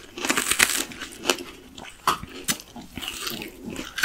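Unripe green plums being bitten and chewed close to the microphone: a run of irregular, crisp crunches.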